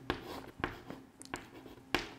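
White chalk on a chalkboard drawing a small stick figure: a few short, quiet scratching strokes and taps.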